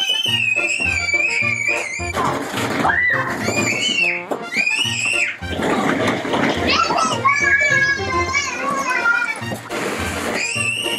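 Children squealing and shrieking with excitement in long, high, wavering cries, over background music with a steady low beat.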